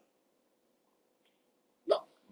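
Near silence with a faint room hum, broken just before the end by one short, sharp vocal sound from a person.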